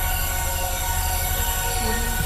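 A sustained electronic drone from an intro video's soundtrack: many steady high tones held over a deep rumble.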